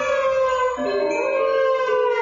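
Trombone playing held notes that slide in pitch, the note changing with a brief dip about a second in.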